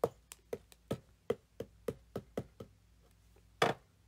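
Light fingertip taps on a smartphone screen, about ten of them at roughly three a second, then a single short, louder sound near the end.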